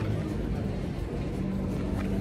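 Steady low rumbling outdoor city noise picked up on a handheld phone microphone, with faint music underneath.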